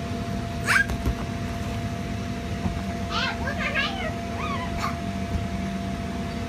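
Children's short high-pitched squeals and voices, a few seconds apart, over the steady hum of the bounce house's air blower.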